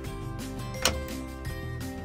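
Background music with sustained tones, and a single sharp click about a second in.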